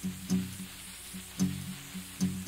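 Guitar with a capo at the second fret playing a soft instrumental passage, low notes picked about once a second and left to ring.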